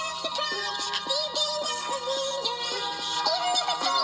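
Pop song sung in high, sped-up chipmunk-style voices over a steady electronic backing.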